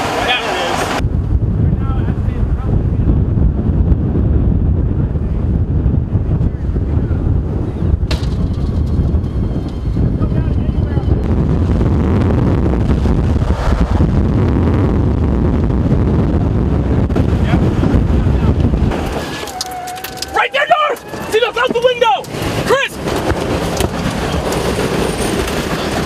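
Strong storm wind buffeting the microphone as a dense low rumble. It eases about three-quarters of the way through, and excited voices take over.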